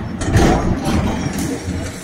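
Diesel engine of a tracked excavator running, a loud low rumble.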